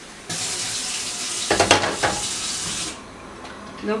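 Kitchen tap running water into a frying pan of chopped onions, shut off about three seconds in.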